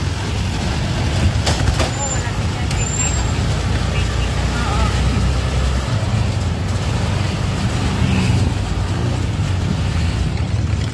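Steady engine rumble and road noise of a moving open-sided motorized tricycle, heard from the passenger seat with traffic around it.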